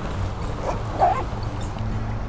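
Rushing water of a shallow riffled trout stream, a steady noisy wash, over a steady low hum. A short faint pitched sound comes about a second in.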